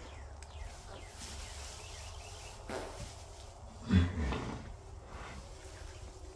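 A mare in labour giving a short, low-pitched vocal sound about four seconds in as she strains to push out her foal, over a steady low background.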